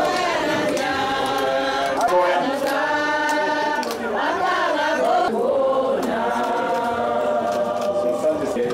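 A group of mourners singing a hymn together at a graveside, with long held notes.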